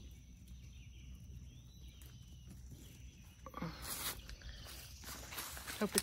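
Faint rustling of tomato plants and leaves as ripe tomatoes are picked by hand, with one brief louder rustle about four seconds in over a quiet outdoor background.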